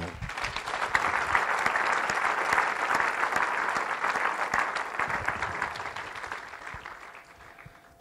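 Church congregation applauding: many hands clapping steadily, dying away over the last two seconds or so.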